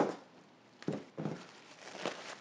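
Plastic cling wrap crinkling as it is folded by hand around a ball of pastry dough, in two short rustles about a second apart.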